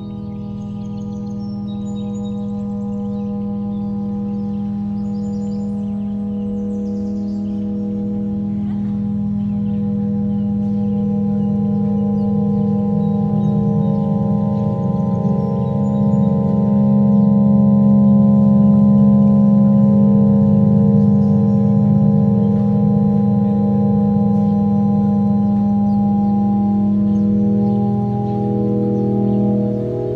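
Ambient drone music: layered, sustained tones with a bell-like ring, held steady and swelling gradually louder over the first twenty seconds or so. There are faint, short high chirps in the first few seconds.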